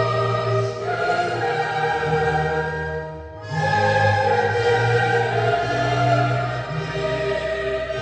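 Choir singing held notes over a low instrumental accompaniment, with a brief break between phrases about three seconds in.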